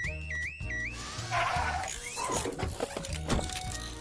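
A cartoon robot's high electronic warble, wavering up and down about three times a second, over background music with a steady bass line; it stops about a second in and gives way to a jumble of whooshing and clattering sound effects.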